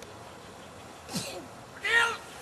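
A handler shouting the dog command "Here!" at a dog running out on the field: a fainter call about a second in, then a loud, drawn-out one near the end.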